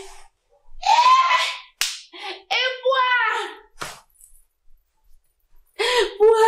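A woman crying out in distress in several loud, high-pitched vocal outbursts, her pitch sliding and breaking, with two sharp smacks in between; the outbursts stop about two-thirds of the way through and start again just before the end.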